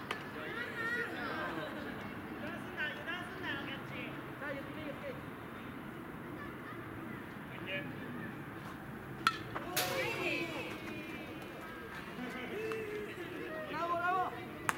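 Distant voices of ballplayers calling and chattering across the field, with a sharp knock a little over nine seconds in followed by louder shouting.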